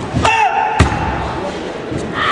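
Karateka's kiai, a high shouted cry held for about half a second, framed by two sharp thuds of the kata's movements. The second thud, as the shout ends, is the loudest sound. All of it rings in a large hall.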